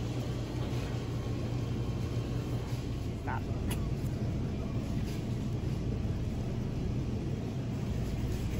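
Grocery store ambience: a steady low hum, with faint voices in the background and a single light click about halfway through.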